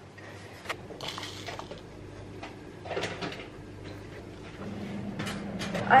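Kitchen drawers and cupboards being opened and shut while items are handled: a few light clicks and knocks over a steady low hum.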